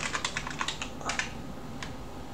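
Typing on a computer keyboard: a quick run of keystrokes through the first second or so, then a few single key clicks.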